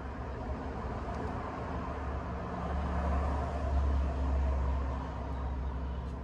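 A low rumble over a steady hum, swelling about two and a half seconds in and fading near the end.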